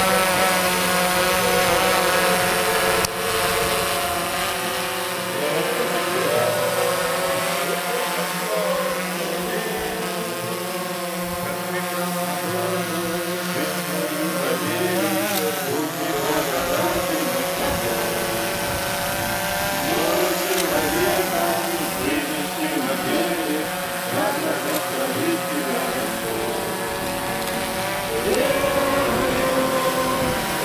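Quadcopter drone hovering and manoeuvring overhead, its propellers giving a steady buzzing whine whose pitch wavers as the motors speed up and slow down.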